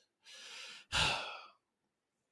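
A person's breath: a soft intake about a quarter second in, then a louder, short sigh-like exhale about a second in.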